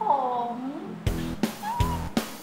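A drawn-out vocal sound falling in pitch, then comic background music with a steady low beat, about two and a half beats a second, starting about a second in.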